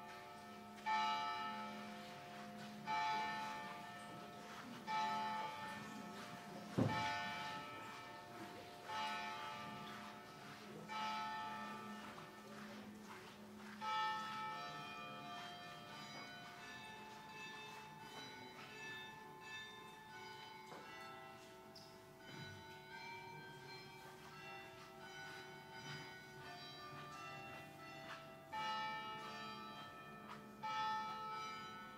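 Church bells ringing: single strikes about every two seconds, each ringing on, then a denser run of overlapping bell tones in the second half. A sharp knock about seven seconds in.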